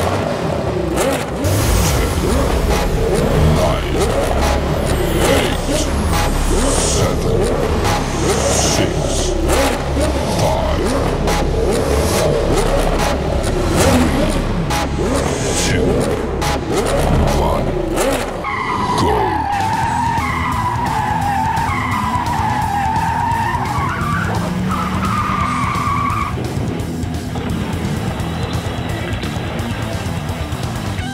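Motor-racing sound effects: race-car engines and skidding tyres over crowd chatter and voices. About 18 s in, the low rumble drops away and a wavering, warbling tone takes over for several seconds.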